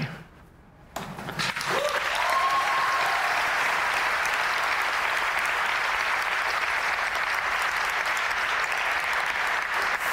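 Audience applauding. The clapping swells in about a second in and then holds steady, with a brief shout from one voice as it begins.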